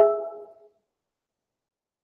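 A short chime-like ring: a sudden strike whose few tones fade out within about half a second, followed by complete silence.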